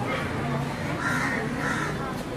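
Crows cawing: two short calls, about a second in and again near the end, over voices around the court.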